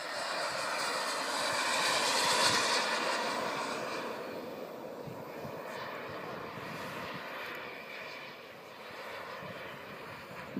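Radio-controlled model jet flying past: its engine noise swells to a peak about two seconds in, then fades as the jet moves away, staying audible in the distance.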